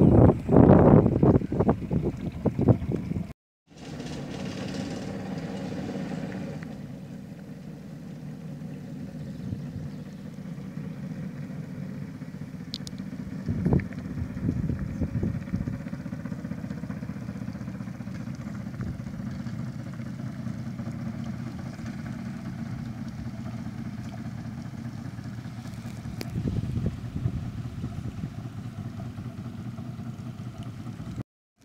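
A Farsund sloop's engine running steadily while the boat moves slowly, still working after 30 years laid up ashore. The first few seconds are louder before a brief cut.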